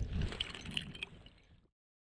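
Faint splashing and dripping of water in an ice-fishing hole, with a few small clicks, fading out to silence about halfway through.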